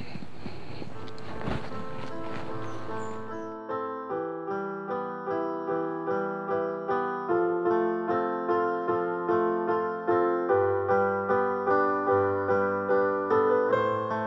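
Background music on a piano-like keyboard comes in about three and a half seconds in. It plays an even run of repeated chord notes, a couple to each second, over a quiet outdoor background hiss at the start.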